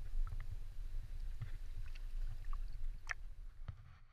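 Sea water sloshing and lapping around a camera held at the surface: a steady low rumble with scattered small splashes and ticks, a sharper one about three seconds in, dying away near the end.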